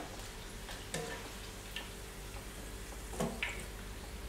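A few light clicks of metal kitchen tongs as fried crostoli pastries are lifted from the oil and set down on paper towel, spaced a second or so apart over a low steady hum.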